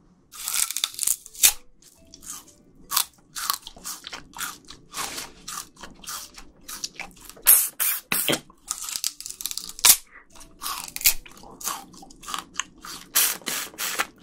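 Raw sugar cane stalk being bitten and chewed into close microphones: a quick, irregular run of sharp, fibrous crunches as the woody cane is crushed between the teeth.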